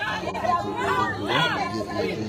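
Several protesters talking and shouting over one another, with a steady low hum underneath.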